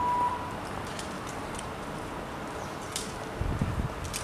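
Outdoor ambience at an empty railway platform. A short high beep opens it, a few faint high chirps follow, and low wind buffeting on the microphone starts near the end.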